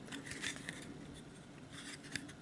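Faint rustle and scrape of an old cardboard light-bulb package being turned over in the hands, with a few short scuffs in the first half-second and again near the end.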